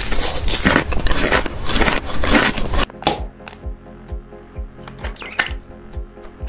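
Close-miked crunching and chewing of a sugar-coated jelly candy, dense and crackly for nearly three seconds. Then it cuts abruptly to background music with a soft steady beat, with a few sharp bites over it.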